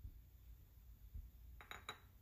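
Near silence with a faint low hum; near the end, two quick light clinks of kitchenware, a utensil against the ceramic baking dish.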